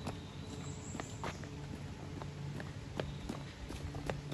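Footsteps on a stone-paved path, a few steps a second and unevenly spaced.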